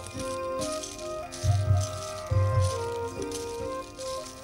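Background score music: held melodic notes over a repeating low drum beat, with a rattling shaker sounding in time with the drum.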